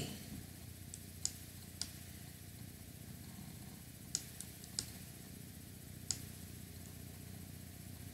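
About seven faint, sharp clicks from a computer mouse and keyboard, scattered over several seconds, over a low steady room hum.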